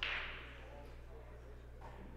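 A single short whoosh that fades and sinks in pitch over about half a second.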